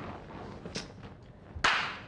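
A single sharp slap of a hand, sudden and loud, about one and a half seconds in, with a short fading tail; before it only quiet room noise.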